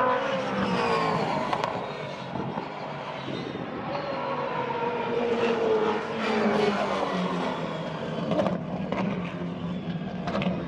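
V8 engine of a Gen 3 Supercars prototype race car accelerating up the track out of pit lane. Its pitch climbs and drops through gear changes as it passes.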